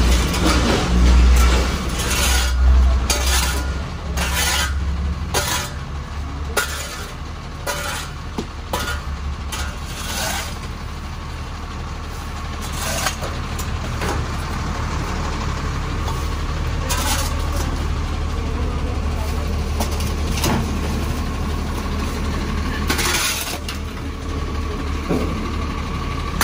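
A large truck's engine idling steadily with a low rumble, under repeated short scrapes and clatters of a shovel and brooms working over concrete pavement.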